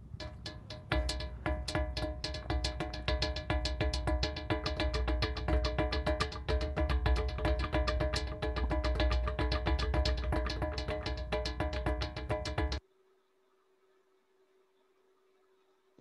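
A rock gong, a ringing boulder with cup-mark indentations, struck rapidly by several players at once: dense overlapping taps over steady ringing tones that build up. It stops abruptly near the end.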